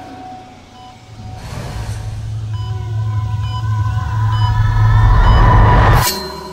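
Trailer sound design: a deep rumbling swell that builds in loudness for about four seconds and cuts off suddenly at the end, with faint high ticks about once a second above it.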